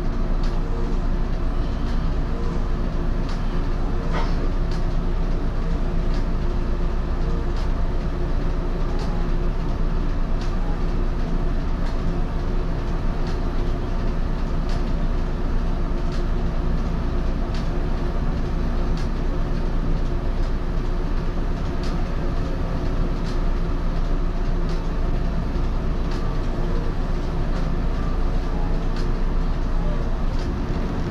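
Steady hum inside the cab of an Echizen Railway MC6001 electric railcar standing at a station, its onboard equipment running, with faint regular ticks roughly once a second.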